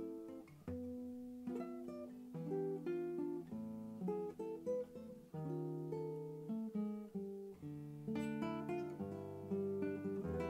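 Dan Kellaway spruce-topped cutaway nylon-string classical guitar played fingerstyle in a solo improvisation. Chords and melody notes follow one another and ring on.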